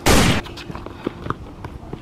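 Gunshot sound effect: a short, very loud blast lasting under half a second at the very start, the second of two shots in quick succession. Faint outdoor background with small clicks follows.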